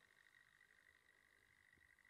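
Near silence: faint night ambience with a steady, high-pitched pulsing trill.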